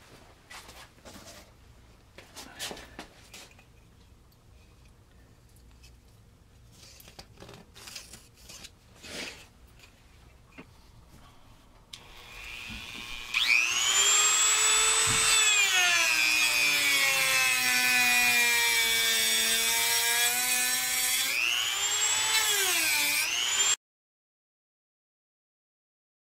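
Dremel rotary tool grinding wood: a loud, high whine that starts about halfway in, falls slowly in pitch and rises again, dips once more near the end, then cuts off suddenly. Before it, only a few faint knocks and handling sounds.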